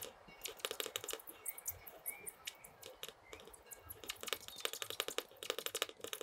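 Rotring mechanical pencil lead scratching on Bristol board in runs of quick, short strokes with brief pauses between them.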